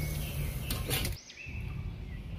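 Two short clicks over low background noise, then, after an abrupt drop about a second in, small birds chirping faintly in the background.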